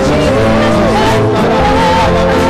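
Live worship band: a woman's voice sings a bending melody over electric and acoustic guitars playing sustained chords.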